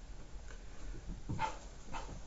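A dog making two short, faint whimpers, about a second and a half in and again just before the end.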